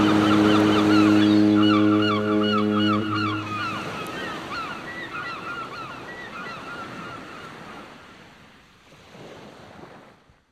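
Seagulls calling over the wash of the sea, with a ship's horn sounding one long steady blast for the first three seconds or so; the whole fades out toward the end.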